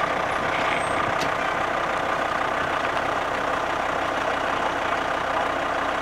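A vehicle engine running steadily, a constant drone with no change in speed.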